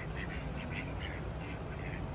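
Mallard ducks giving a run of short, quiet quacks while foraging in leaf litter, over a steady low background rumble.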